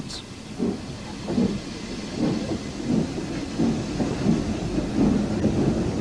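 Steam locomotive sound on an old film soundtrack: a low, uneven rumble under a steady hiss, with no clear exhaust beat.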